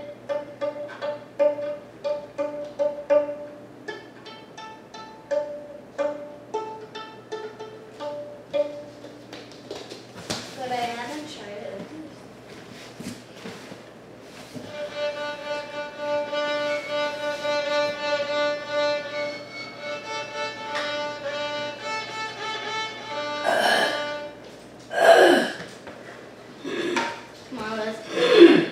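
A child playing a small violin: first a run of short, quickly repeated notes, then after a pause longer, held bowed notes. A child's voice breaks in loudly near the end.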